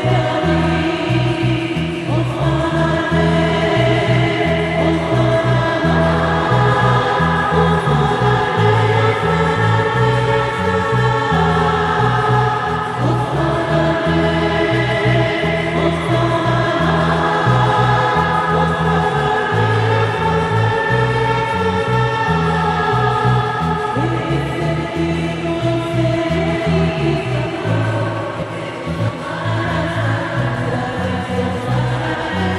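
A church choir singing a hymn over a low, stepwise bass accompaniment.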